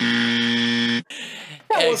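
Countdown timer buzzer marking time up: one low, buzzy tone held for about a second, then cut off sharply.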